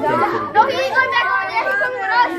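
A group of children talking loudly over each other in excited chatter.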